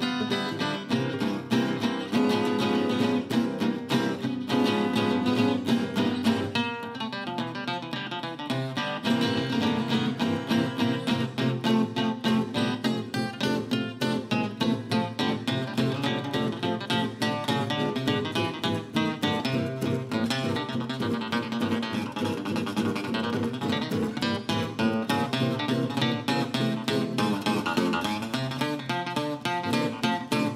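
Instrumental acoustic guitar music: a steady run of fingerpicked notes over a bass line.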